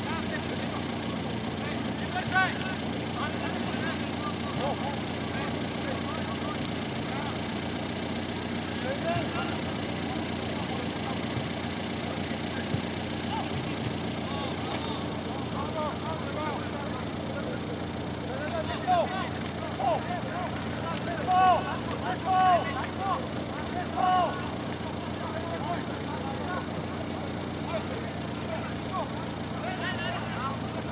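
Voices calling and shouting across an outdoor football pitch, with a run of louder short shouts about two-thirds of the way in, over a steady low background hum.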